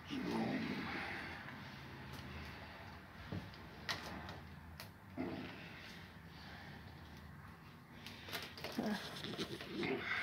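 A phone being handled up close: rustling and a few light clicks and knocks on the microphone, with faint muffled voice sounds in the first second and again near the end.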